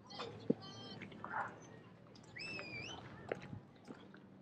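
Street sounds on a busy pedestrian walkway: faint snatches of passers-by's voices, scattered sharp clicks, and a single high-pitched call that rises and then holds about two-thirds of the way through.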